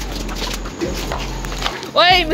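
Several voices shouting and yelling in a rowdy commotion over a steady low hum, ending in a loud high-pitched yell.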